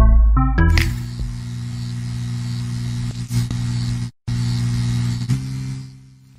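Electronic outro music: a few short stepped synth stabs, then a steady buzzing synth drone with a static hiss over it. It cuts out briefly about four seconds in and fades near the end.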